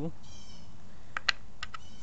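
Four short, sharp clicks of stone points knocking against a wooden cutting board as they are handled: a quick pair about a second in, the second the loudest, then two lighter ones just after.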